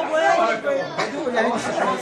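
Several overlapping voices in a large hall, with the wavering, drawn-out pitch of Arabic religious chanting.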